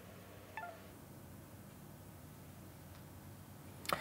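A short, faint electronic alert chime of a few quick falling notes about half a second in, as the data write to the radio completes. Otherwise quiet room tone.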